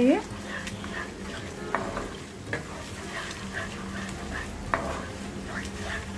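A wooden spoon stirs and scrapes a thick tomato-and-yogurt masala frying with a light sizzle in a nonstick pan, with a few sharp knocks of the spoon on the pan. The yogurt is being fried and stirred quickly so that it does not split.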